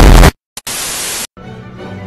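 The loud tail of an explosion blast with a deep rumble, cut off abruptly a third of a second in. After a click comes about half a second of even static hiss, then quieter music over a low steady hum.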